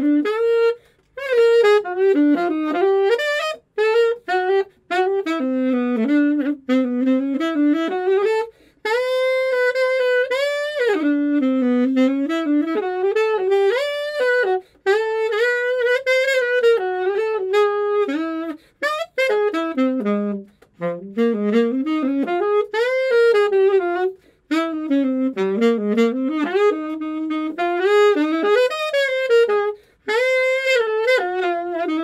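Unaccompanied alto saxophone playing a jazz melody, one line gliding up and down in phrases broken by short breaths every few seconds.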